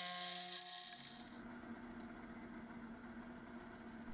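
Milling machine running with its end mill cutting aluminum angle: a steady whine with several fixed tones and a high hiss, which stops a little over a second in. A fainter, steady low hum carries on after it.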